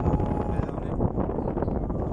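Wind buffeting a phone microphone on the deck of a moving ferry, a steady low rumble.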